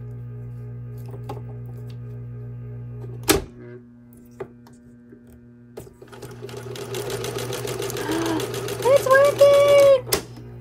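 Small 1961 Singer Sew Handy electric toy sewing machine. Its motor gives a steady low hum, then a sharp click about a third of the way in cuts it off, followed by a few seconds of light ticks. After that the machine runs again, its needle mechanism making a fast, even chatter that grows louder toward the end.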